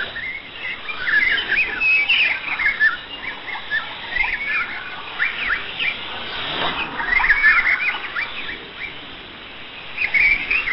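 Birdsong of many quick, overlapping chirps, played as an interlude on a shortwave radio broadcast. It is heard through steady reception hiss and a narrow audio bandwidth that cuts off the highs, with a longer falling sweep about two-thirds of the way through.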